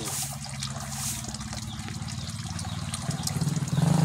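Water trickling from a small PVC pipe into a fish pond. Under it runs a low steady hum that grows louder near the end.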